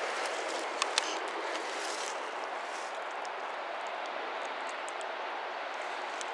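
Steady outdoor background noise, an even hiss-like rush, with a few faint clicks about a second in.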